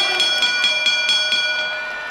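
Boxing-ring bell rung rapidly, several strikes a second for about a second and a half, then ringing on and fading, the way a ring bell is rung to stop a bout after a knockout.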